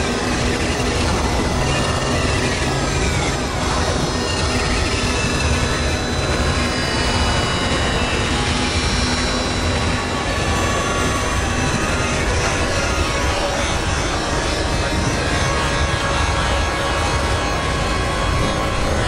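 Experimental electronic noise music: a dense, steady synthesizer drone wash with held low tones and a descending pitch sweep a couple of seconds in.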